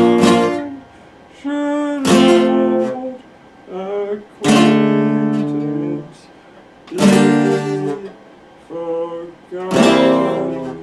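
Epiphone acoustic guitar strummed in slow chords: four strums a couple of seconds apart, each left to ring out and fade.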